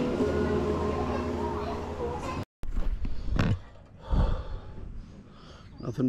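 Taproom background of voices with held tones, cut off suddenly about two and a half seconds in. After the cut comes a much quieter outdoor background with a couple of low knocks.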